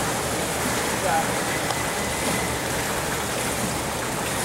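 Steady rushing noise of water in an indoor swimming pool, where a swimmer in a life jacket is floating and treading water.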